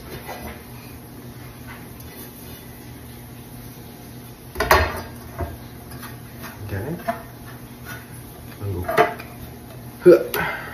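A plate and a glass baking dish clacking and clinking on a wooden countertop as a flan is turned out of the dish onto the plate. A series of short knocks, the loudest a little before halfway through, with smaller ones after it.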